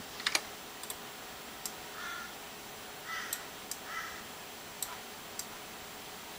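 Sharp, separate computer mouse and keyboard clicks, the loudest pair about a third of a second in and more scattered through the rest. Three short, harsh, caw-like sounds come about a second apart around the middle.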